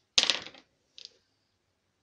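A handful of wooden dice rolled onto a wooden tabletop: a quick clatter of clicks lasting about half a second, then one more faint click about a second in.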